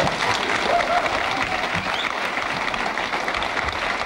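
Live audience applauding steadily at the end of a song.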